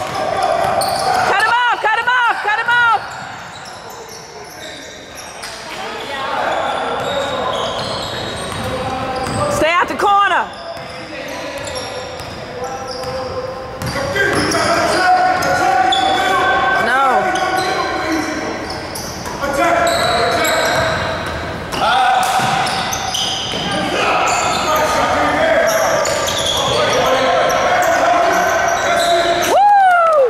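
Basketball game sounds in a large, echoing gym: a basketball bouncing on the hardwood floor, sneakers squeaking in short bursts about two seconds in, again near ten and seventeen seconds and at the end, and spectators shouting and talking, louder in the second half.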